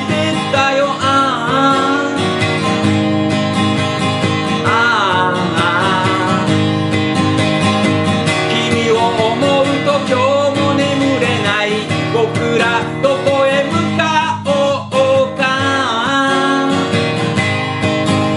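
K.Yairi YW-1000 acoustic guitar strummed steadily through a chord progression, with a man singing over it.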